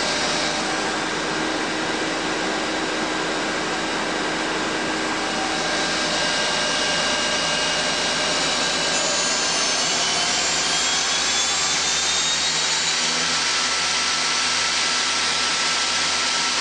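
Spindle of a 2010 Mazak Quick Turn Nexus 200-II CNC lathe running at high speed with no cut, a steady rushing hiss under several whines. Through the middle the whines climb slowly in pitch as the spindle speeds up, then hold steady.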